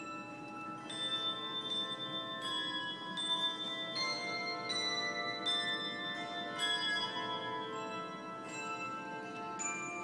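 Handbell choir playing a melody: single struck bell notes about twice a second, each ringing on and overlapping the next, a little slower towards the end.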